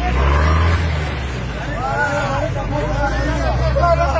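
Crowd of men talking over one another, with clearer voices from about halfway through, over the low, steady hum of a vehicle engine running.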